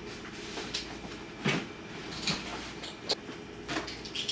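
A few faint knocks and clicks from dishes and utensils being handled in a kitchen, over a steady low room hum. The strongest knock comes about one and a half seconds in.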